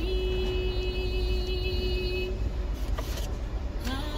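A car's engine idling, a steady low rumble heard from inside the cabin. In the first half a single held pitched tone sounds over it.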